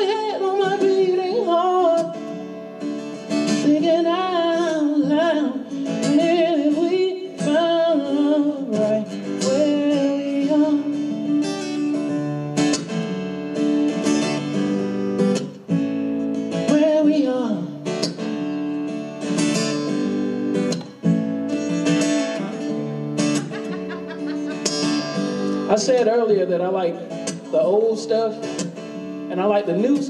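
A man singing live to his own strummed acoustic guitar. The voice carries the first ten seconds or so and comes back near the end, with the guitar playing on between.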